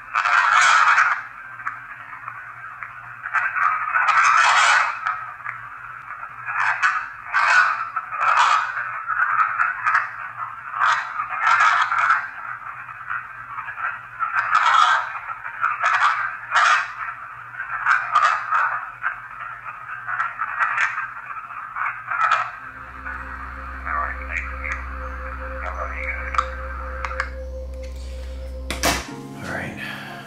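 Spirit box radio sweep through a small speaker: choppy radio static broken by snatches of broadcast voices, which the session takes as spirit replies such as "I want to punch you". Near the end a low hum starts and the static stops.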